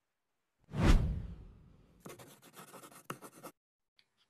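Logo intro sound effect of a promotional video: a sudden low whoosh-and-hit about a second in that fades away, then about a second and a half of scratchy, scribbling noise like a pen writing.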